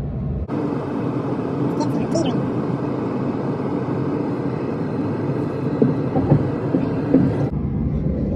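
Steady vehicle engine rumble heard inside a pickup truck's cab while the truck is pulled back onto the road by a dozer. It starts suddenly about half a second in and cuts off near the end.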